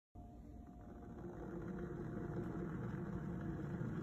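Glass electric kettle boiling water: a steady rumble of water at the boil that grows gradually louder.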